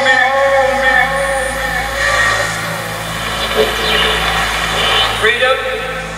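A recorded orator's voice played loud through arena loudspeakers, with long drawn-out syllables in the first couple of seconds and again near the end, over a steady low hum.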